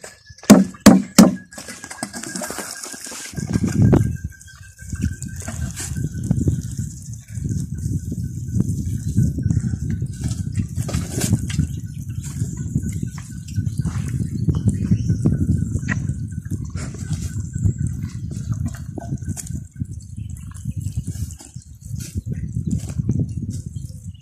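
Liquid fertilizer poured from a plastic watering can onto banana seedlings and bare soil, as a continuous, uneven splashing pour that starts about three seconds in. Before it there are a few sharp knocks, the loudest sounds here.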